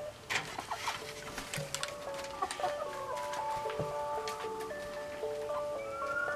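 Hens clucking in a coop, with instrumental background music coming in about a second and a half in.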